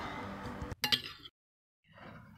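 A metal spoon clinks a few times against a plate while a chopped vegetable filling is stirred, over a faint steady background. Just past the middle the sound cuts out to dead silence for about half a second.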